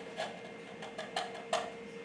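Raw potato scraped by hand in short, uneven strokes, about five in two seconds, to make a potato poultice.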